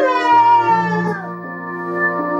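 A man's singing voice holding a long note that slides downward and ends about a second in, over a karaoke backing track that then plays on alone with sustained chords.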